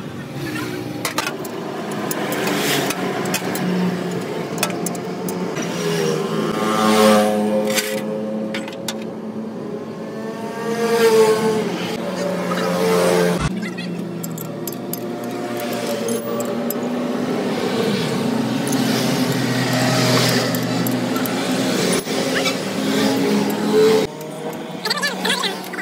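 A motor vehicle engine running, its pitch rising and falling as it is revved, twice in the first half and again near the end.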